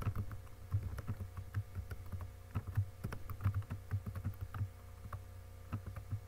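Computer keyboard typing: a run of irregular keystrokes that thins out near the end.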